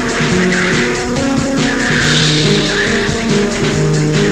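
Raw, lo-fi black metal: heavily distorted buzzing guitars hold a riff of changing low notes over fast, steady drumming, the whole mix dense and hissy.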